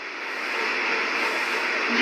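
A steady hiss of noise with no clear tone or rhythm, slowly growing louder.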